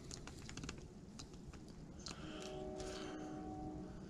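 Faint, scattered light clicks and taps of small tools and materials being handled on a workbench. In the second half a faint steady tone holds for nearly two seconds.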